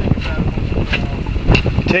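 Wind buffeting the microphone over the low, steady rumble of a fishing boat at sea, with two short clicks near the middle.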